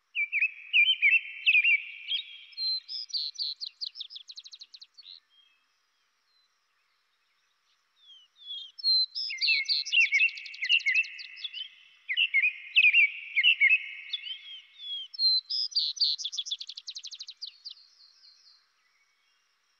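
An American robin and a vesper sparrow singing together. The robin gives short whistled caroling phrases near the start and again in the middle. The vesper sparrow sings three times, each song opening with whistled notes and ending in a fast, higher trill.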